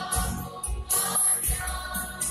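Mixed choir singing a gospel song with band accompaniment: a low beat underneath and bright, high percussive hits about once a second.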